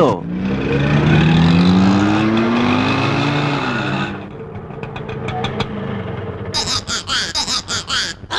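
Motor vehicle engine accelerating, its pitch rising steadily for about four seconds before it drops away, followed by quieter street traffic.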